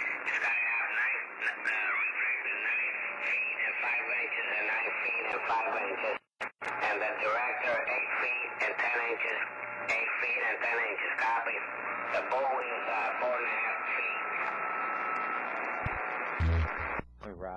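A voice received over a CB radio on lower sideband, thin and muffled with no highs, talking steadily but too garbled to make out. The signal drops out completely for a moment about six seconds in, and a faint steady whistle sits under the voice for a few seconds near the end.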